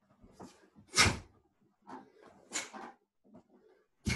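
Quick whooshes about every second and a half, from a Taekwon-Do practitioner in uniform throwing strikes and a kick. Softer shuffling of bare feet on a wooden floor comes between them.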